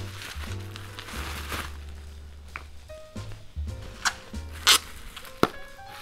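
Plastic wrapping rustling and crinkling as it is stripped off a perfume package, with a few sharp crackles in the second half. Soft background music with low sustained tones plays under it.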